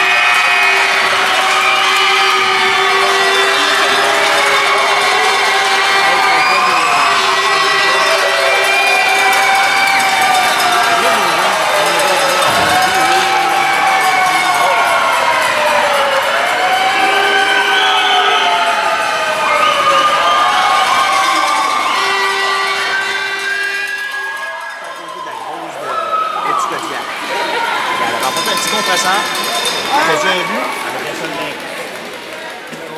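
Hockey arena crowd cheering and shouting, with voices rising and falling in a repeated chant-like pattern and a steady held tone sounding on and off. The cheering dies down about three-quarters of the way through and gives way to quieter chatter.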